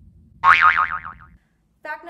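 A cartoon-style 'boing' sound effect: a short pitched sound with a fast wobble, sliding slowly down in pitch and lasting under a second. Speech begins near the end.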